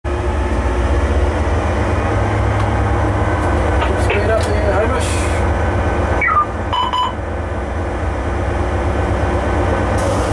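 Cab noise of a DL class diesel-electric locomotive on the move: a steady low engine drone with the rumble of running. Muffled voices run underneath, and a short electronic beep sounds about two-thirds of the way through.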